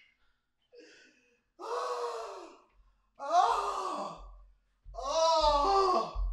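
A man's voice letting out three long, breathy, wavering bursts of barely held-in laughter in a row, each about a second long.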